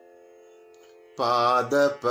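A faint steady drone. About a second in, a man's voice sings the sargam syllables "ma ma", its pitch sliding.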